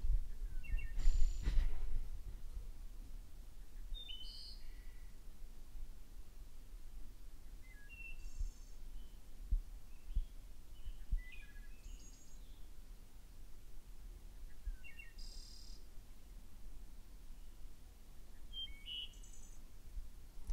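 Garden birds chirping and calling in short, scattered notes over a low steady background rumble, with a brief louder noise about a second in.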